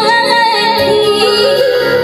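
A young girl singing a Maithili folk song in a held, ornamented line that wavers and glides between notes. She accompanies herself on a harmonium, which holds steady chords beneath her voice.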